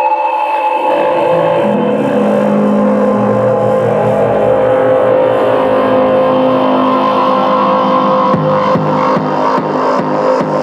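Techno music: a sustained, distorted synth drone with held tones. A steady kick-drum beat of about two hits a second comes in near the end.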